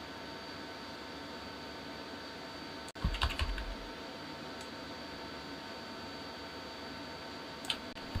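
Computer keyboard keys pressed: a quick run of several clicks about three seconds in and another click near the end, over a steady background hiss.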